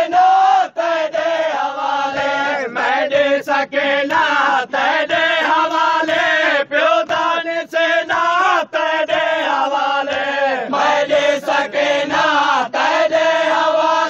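Group of voices chanting a Saraiki noha, a Shia mourning lament, in chorus, the melody rising and falling with brief breaks between phrases.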